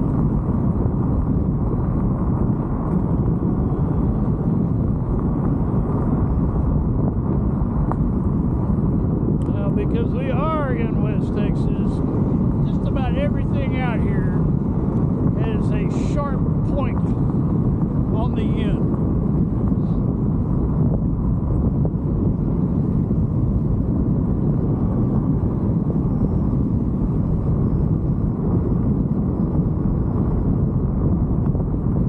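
Steady wind buffeting the microphone and road rumble from a scooter riding along a paved road. Midway a run of short, high chirping calls is heard over it for several seconds.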